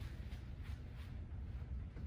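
Faint footsteps on artificial turf, a few soft scuffs in the first half, over a steady low hum.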